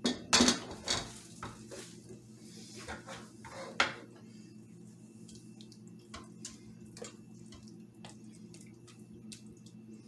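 Stainless-steel pressure-cooker lid and pot clattering in the first second, with another sharp knock near four seconds, then a silicone spatula stirring sauce in the steel inner pot with light scattered ticks, over a steady low hum.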